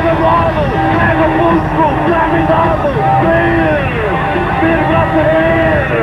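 Live rock band playing loud amplified music, with a lead line of notes that bend and glide up and down over electric guitars and drums.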